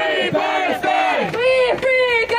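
A crowd of protesters shouting a chant, with a woman's high voice leading on a microphone.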